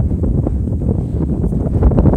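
Wind buffeting the phone's microphone, a loud, uneven low rumble.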